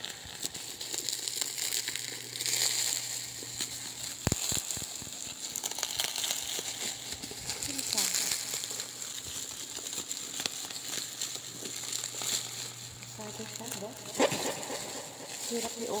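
Plastic packaging crinkling and rustling as black plastic wrap is pulled off a parcel by hand, with a sharp click about four seconds in and another near the end.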